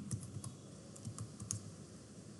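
About half a dozen faint, separate keystrokes on a computer keyboard.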